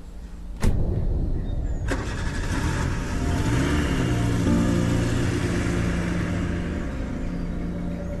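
A sharp knock, then a car engine starting and running, its pitch rising and settling briefly around the middle.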